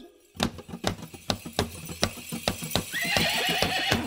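Sharp clip-clop knocks, several a second, joined about three seconds in by a high, wavering cry that rises in pitch, at the start of a rumba track.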